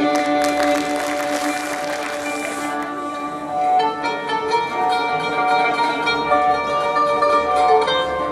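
Andalusi orchestra of ouds, qanun, mandolin and violins playing: held ensemble notes with a bright hissing wash for the first few seconds, then, from about halfway, a quick instrumental line of plucked notes from the ouds, mandolin and qanun.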